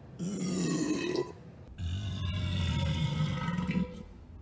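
A man belching twice after downing a glass of carbonated soda: a short burp, then a longer, lower one lasting about two seconds.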